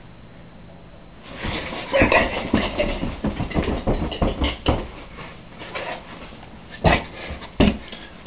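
A plush teddy bear being punched and slammed: a rapid flurry of soft thumps and rustling about a second and a half in, with a man grunting, then two hard thumps near the end.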